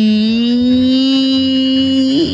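A person's voice drawing out one syllable, 'si…', as one long held vowel at a steady pitch that rises slightly, breaking off just after two seconds.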